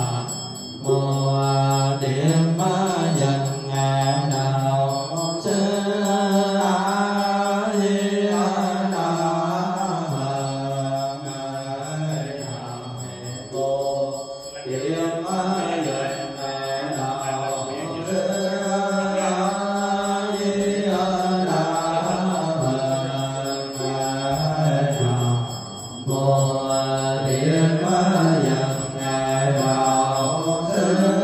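Buddhist chanting: a melodic, sung recitation that runs in long phrases, with a few brief pauses between them.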